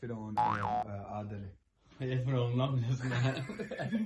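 A short comedy sound effect, a boing-like tone that rises and falls in pitch, lands about half a second in over a man's speech. From about two seconds in, men laugh loudly.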